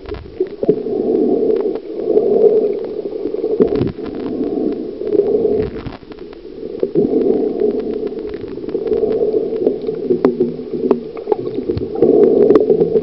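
Muffled underwater water noise picked up by a waterproof compact camera's microphone while submerged: a dull churning and sloshing that swells and fades every second or two, with scattered small clicks and knocks.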